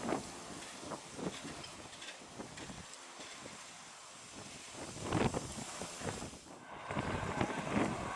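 Wind gusting across the microphone over the distant noise of a jet airliner on its landing roll. The sound changes abruptly near the end.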